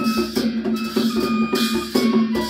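Traditional Newar ensemble playing a Mataya song: large brass hand cymbals clashing and ringing on a quick steady beat with a strapped barrel drum, while a bamboo transverse flute holds long high notes of the melody.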